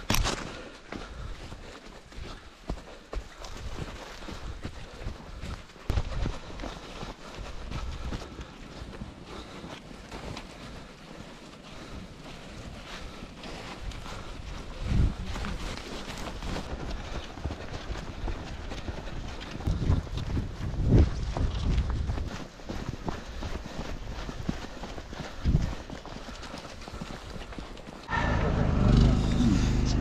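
Footsteps in snow as a runner moves along a snowy trail, with wind rumbling on the microphone. Near the end the sound jumps to a louder outdoor scene.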